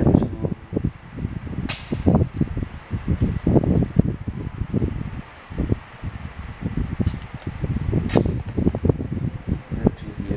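Irregular handling noise of hands working at the printer's wiring: rustling, scraping and light knocks, with two sharp clicks, about two seconds in and again about eight seconds in.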